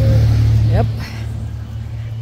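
Wind buffeting the microphone: a heavy low rumble, loudest in the first second and then easing.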